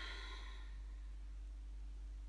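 A woman's audible breath out, a soft breathy sigh fading over the first half second or so, over a steady low hum.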